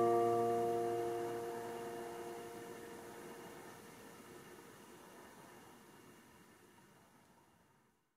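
The final strummed acoustic guitar chord ringing out and dying away over about four seconds, fading to near silence.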